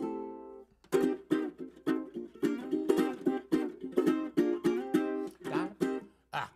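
Metal-bodied resonator ukulele strummed in a jaunty instrumental intro: a single chord rings out first, then after a short break a quick, steady rhythmic strum of chords.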